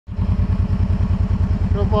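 Kawasaki ATV engine idling, a steady loud low thumping at about ten beats a second. A voice begins near the end.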